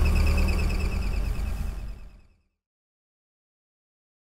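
Propane-fuelled Caterpillar forklift engine running steadily with a low hum, while it runs rich with high CO and hydrocarbon readings: not burning all its fuel, so it needs tuning. The sound fades out quickly about two seconds in.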